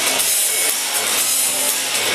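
Loud, steady rushing noise from the soundtrack of a car promotional film played over a hall's loudspeakers, with faint music underneath.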